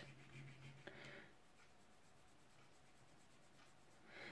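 Faint scratching of a soft pastel stick rubbed on paper for about the first second, then near silence.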